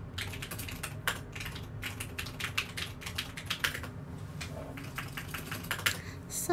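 Rapid, irregular tapping clicks of typing, from fingers and nails on the touchscreen of the phone held close to the microphone, over a low steady room hum.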